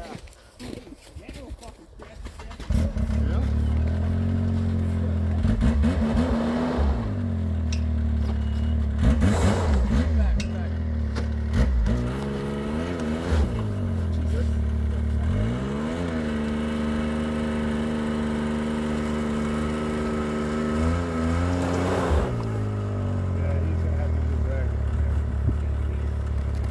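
Snowmobile engine starting about three seconds in, then running steadily and revved up and back down several times. The sled has just been pulled out of the lake after breaking through the ice.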